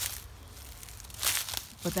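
Footsteps crunching through dry leaf litter and low forest plants: a few short crunches, the loudest a little over a second in.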